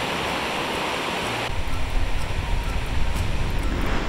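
Water from a spring-fed torrent in full spate rushing over rocks, giving way about a second and a half in to the deep rumble of heavy storm surf breaking against rocky cliffs.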